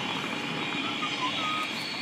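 Steady outdoor background noise, with a few faint short tones in the second half.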